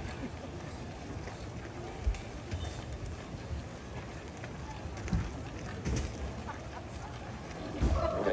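Lull at an outdoor concert: a faint murmur of audience voices over low, uneven wind rumble on the microphone, with a few short knocks about two, five and six seconds in.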